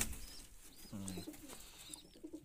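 Domestic pigeons cooing, with one low coo about a second in.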